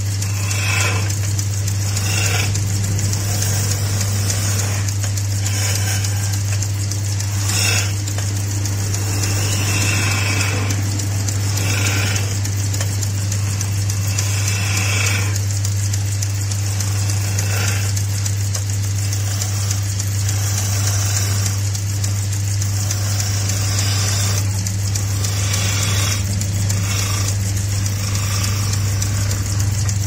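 Wood lathe running with a steady low motor hum while a turning gouge cuts the spinning wooden blank, the cutting scrape coming and going in short passes every second or two.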